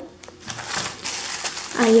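Thin plastic produce bags and packaging crinkling and rustling as hands rummage among them, an irregular rustle lasting about a second and a half.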